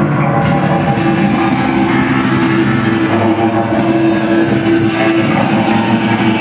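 Electric guitars played live through effects pedals and amplifiers: a dense, sustained wall of tones, with one held note standing out from about a second in until about five seconds.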